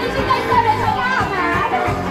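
Live rock band playing a song, with a steady bass line under high sung vocals that slide up and down in pitch.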